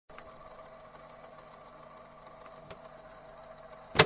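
Faint steady hum with a few level tones and a couple of soft clicks, ending in a loud sharp hit.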